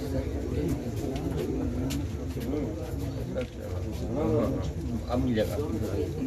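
Low, repeated cooing calls of a bird that rise and fall, more frequent in the second half, with people's voices and a steady low hum.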